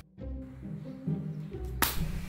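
Quiet background music that drops out for a moment at the start, with one sharp whoosh transition effect near the end.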